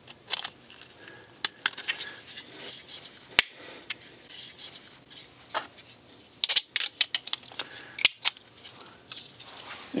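Plastic clicks and scrapes of small automotive relays and an electronic flasher being pushed into a tight-fitting 3D-printed plastic bracket. There is a sharp click about a third of the way in and a run of clicks about two-thirds through.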